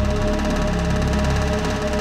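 Dramatic film background score: a steady held chord with a deep low drone underneath.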